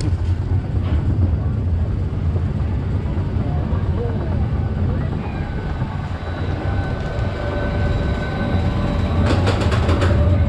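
Junior roller coaster train climbing the lift hill: a steady low rumble of wheels and lift mechanism running on the track, with a quick cluster of clicks near the end as the car reaches the top.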